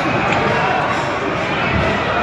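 Earthquake shaking an airport terminal: a loud, steady din of rumbling and rattling with people's raised voices over it, and a low thud near the end.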